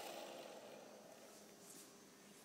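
Electric motors and rotors of a Sky King RC toy helicopter winding down and fading to near silence within about a second.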